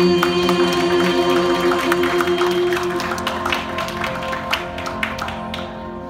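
An a cappella vocal group holds its final chord, which fades out over the first three seconds, while audience applause of scattered hand claps starts about half a second in and dies away near the end.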